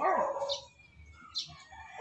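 A dog gives a short bark at the start, then it goes quiet apart from one brief faint sound about one and a half seconds in.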